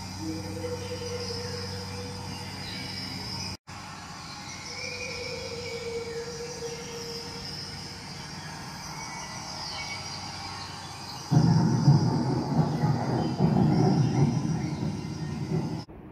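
Jungle-room effects soundtrack played through speakers: faint insect and bird-like calls over a low hum, then, about eleven seconds in, a much louder rough rumbling noise that runs until near the end.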